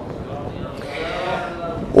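Men's voices calling out from a listening audience, faint and wavering, in a pause of Quran recitation.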